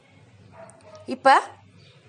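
One short spoken word with a sharply rising pitch about a second in; otherwise quiet room tone.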